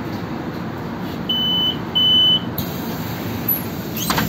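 A city bus's door-closing warning: two beeps, each about half a second long, one right after the other, over the steady rumble of the idling bus engine as the doors close.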